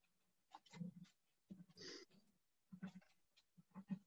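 Near silence: faint room tone with a few brief, faint sounds scattered through it.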